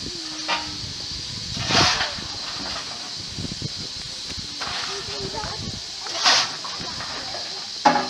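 BR Standard Class 5MT 4-6-0 steam locomotive 73082 starting away: steam hisses steadily, broken by two loud exhaust beats about four and a half seconds apart, with a sharp short blast just before the end.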